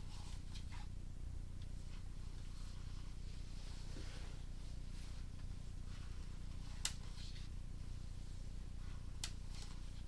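Steady low electrical hum from a sewer inspection camera rig, with faint handling rustles and two sharp clicks, about seven and nine seconds in, as the camera's push cable is drawn back through the pipe.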